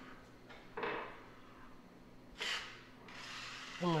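Drywall knife scraping joint compound along a plaster corner: two short strokes, about a second in and about two and a half seconds in.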